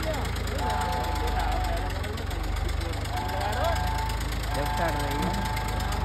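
Farmtrac Champion tractor's diesel engine running steadily at a low rumble while it pulls an empty trolley through loose sand.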